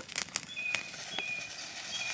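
A few light metal clicks as the lid of a stainless steel camping pot is lifted off, with thin high bird whistles in the background.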